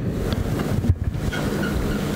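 Handling noise of a handheld microphone: rubbing, breath and low thuds as it is moved from the mouth and lowered to a table, loud and rough like wind on the microphone.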